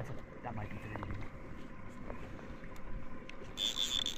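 Low wind and water noise, then about three and a half seconds in a fly reel's drag starts a steady high-pitched whir as the hooked trout pulls line off the reel.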